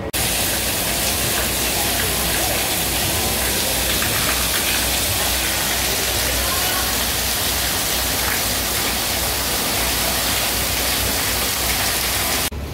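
Heavy water pouring and spraying down from overhead, a loud steady hiss like a downpour, cutting in suddenly at the start and cutting off just after the end.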